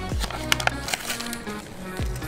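Crinkling and crackling of a plastic blister pack and card backing being torn open by hand, over background music with a beat.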